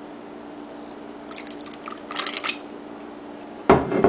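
Rum poured from a glass bottle into a tumbler of ice: about a second of liquid splashing over the ice with light clinks. Near the end, a loud knock as the bottle is set down on the table.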